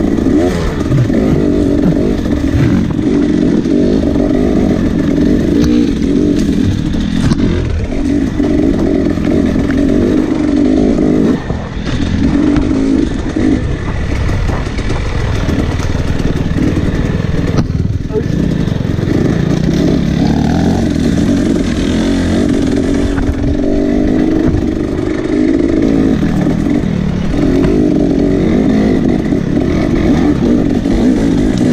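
Off-road dirt bike engine running hard, revving up and down with the throttle, with a few knocks and clatter from the bike over rough ground.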